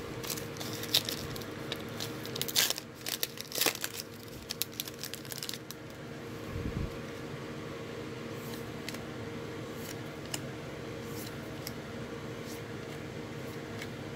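Foil trading-card pack being torn open and crinkled, with sharp crackles for about the first five seconds. After that, only faint ticks of the cards being handled over a steady hum.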